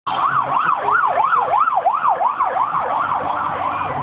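Police car siren on a fast yelp, its pitch sweeping up and down about three times a second, sounded by police expediting to a job; it grows a little weaker near the end.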